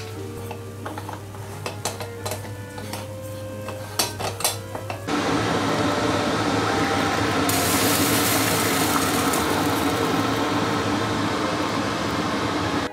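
Background music with a few light clicks. About five seconds in, a loud, steady hiss begins abruptly: a stovetop moka pot brewing, with the coffee coming up into the top chamber.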